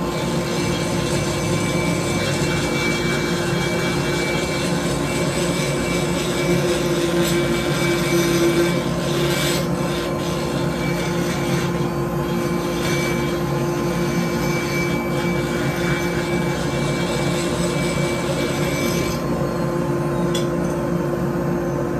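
High-speed rotary grinder with a burr grinding out the ports of a Stihl 461 chainsaw cylinder, a steady high-pitched whine over continuous rasping as the metal is cut away.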